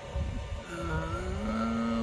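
A man's long, drawn-out "uhhh" of hesitation, starting just under a second in and held at a steady pitch, over a low rumble.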